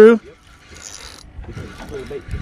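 Spinning fishing reel being cranked faintly as a hooked fish is wound in.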